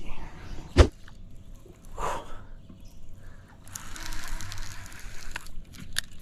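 A sharp click, then rushing, splashing noise as a hooked fish thrashes at the surface: a mudfish (bowfin) fighting a bent baitcasting rod.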